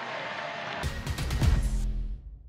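Broadcast stadium background noise, then about a second in a short, loud music sting with heavy bass hits. It marks an inning transition and dies away at the end.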